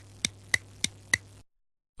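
A ticking sound effect: five sharp ticks about three a second over a faint low hum, stopping about a second and a half in.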